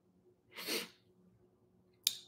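A person's single short, sharp breath about half a second in, much quieter than her speech.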